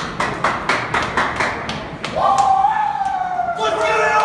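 Sharp clacks of football cleats on concrete mixed with claps, about four a second. About two seconds in, a long drawn-out shout begins and slowly sinks in pitch, with a second shout joining near the end.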